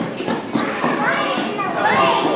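Room full of people talking over one another, with children's high voices rising above the chatter.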